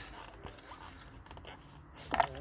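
Faint rustling and light scattered clicks of a gloved hand working among the wiring harness in the engine bay, reaching for a VANOS solenoid connector.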